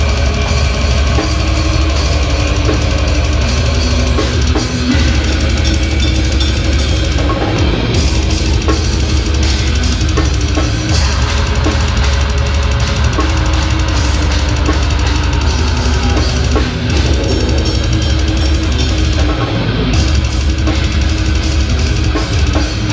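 A technical death metal band playing live: drum kit with dense, continuous bass drum and cymbals, over electric guitars. The cymbal wash briefly drops out twice, about a third of the way in and near the end.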